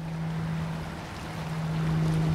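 Outdoor ambience by open bay water: wind on the microphone and water noise, with a steady low drone running underneath.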